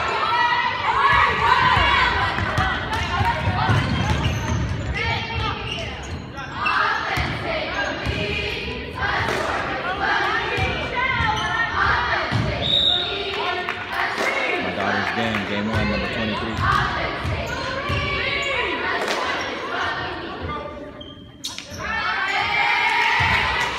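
Basketball bouncing on a gym floor during play, with voices shouting and calling across an echoing gym.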